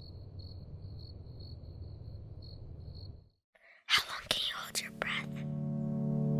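Cricket-like chirping, a faint high chirp about twice a second over a low rumble, cuts off about three seconds in. After a moment of silence come a few sharp clicks and short hissing noises. Near the end a sustained low music chord begins and swells.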